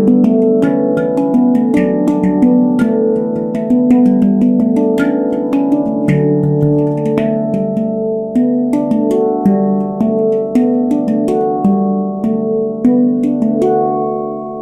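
Handpan in the D Ashakiran scale played with the hands: a steady run of struck notes, several a second, each ringing on and overlapping the next.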